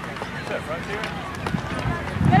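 Distant shouts and calls of field hockey players across an outdoor pitch, with a few short clicks and a low rumble that swells near the end.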